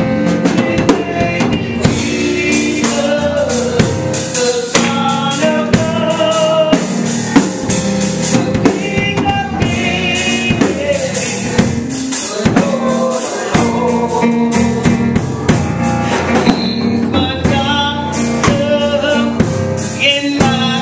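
Live gospel band playing: a drum kit keeps a steady beat, with electric guitar and keyboard and voices singing over it.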